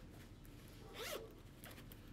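A single faint, brief rasp about halfway through, from hands handling things on the table, over quiet room tone.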